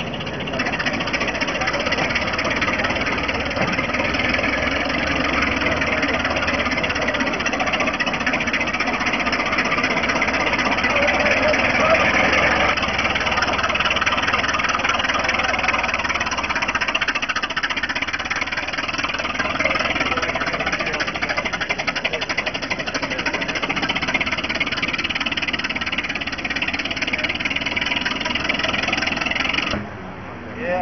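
An antique truck's engine running close by, a steady, loud mechanical noise with voices underneath. It cuts off abruptly near the end.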